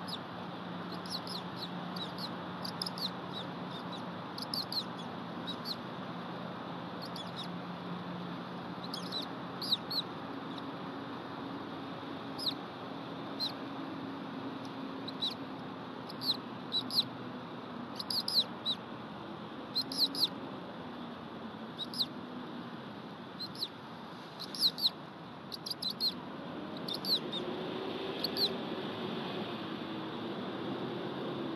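Bald eagles calling: short, high-pitched chirps that fall slightly in pitch, coming in scattered groups of two or three, over a steady background hiss.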